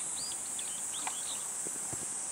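A steady high-pitched insect buzz with a bird chirping over it in short, quick notes, about five a second at first and more scattered later.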